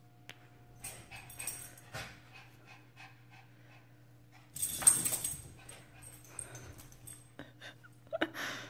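Small dogs at rough play, giving short scattered vocal noises, with one loud sharp outburst about five seconds in.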